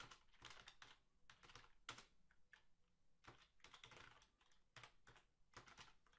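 Faint typing on a computer keyboard: quick, irregular keystrokes as a command is entered in a terminal.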